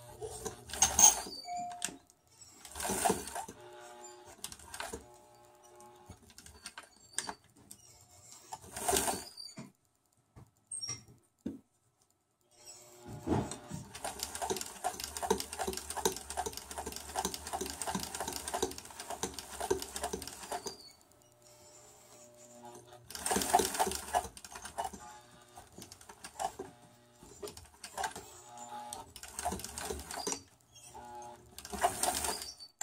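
Sewing machine stitching through fabric in stops and starts: short spurts of a second or so, and one longer run of about eight seconds in the middle.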